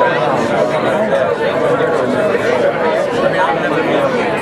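A crowd of people chatting all at once: a steady babble of many overlapping conversations, with no single voice standing out.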